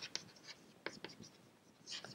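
Chalk writing on a chalkboard: a few faint, short scratches and taps.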